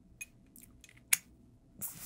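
A man's faint mouth noises, a few small lip smacks and tongue clicks with the loudest about a second in, over quiet room tone.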